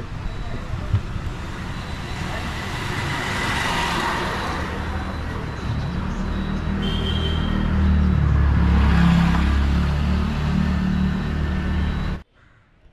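Street traffic: a motor vehicle passes about four seconds in, then a low engine rumble swells, loudest about eight to ten seconds in.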